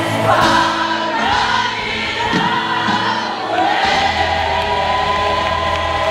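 Large ensemble cast singing together in chorus with musical backing, ending on a long held chord from about four seconds in.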